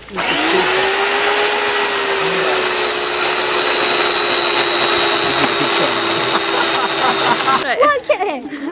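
A steady, loud whining machine noise, like a small electric motor, that rises in pitch as it starts up and cuts off suddenly near the end. No separate chopping strokes stand out.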